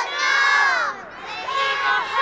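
A group of children crying out together in alarm, high voices overlapping in long wordless cries: one that falls away about a second in, and another that starts near the end.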